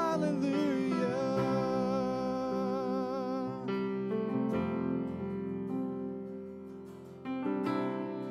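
Live worship music: a woman's voice holds a final note with vibrato over strummed acoustic guitar and keyboard. The voice stops about three and a half seconds in, and the chords ring on and fade. Near the end a new keyboard chord comes in.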